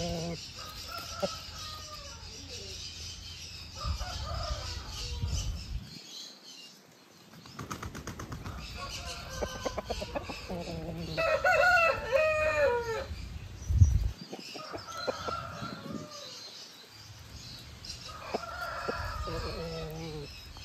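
Aseel roosters crowing and clucking in several separate calls, the longest and loudest crow coming a little past the middle, with a sharp knock just after it.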